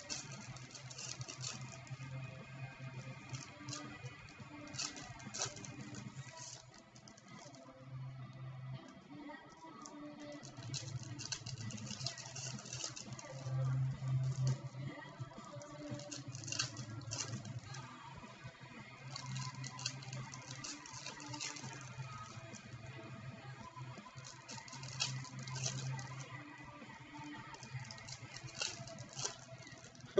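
Foil trading-card pack wrappers crinkling as they are torn open, with cards handled and stacked, in irregular bursts of crackle. Quiet background music with a low steady tone runs underneath.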